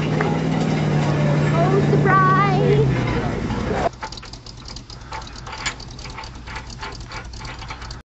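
A vehicle engine idling with a steady low hum, with voices over it. It cuts off suddenly about four seconds in, leaving a quieter stretch of scattered ticks and noise.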